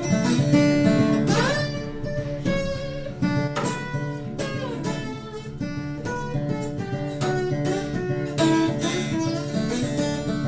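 Acoustic guitar played with a metal slide, fingerpicked notes in a steady rhythm with the slide gliding in pitch about a second and a half in and again near four seconds.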